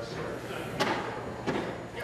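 Background murmur of voices in a large hall, with two sharp knocks, one a little under a second in and one about a second and a half in.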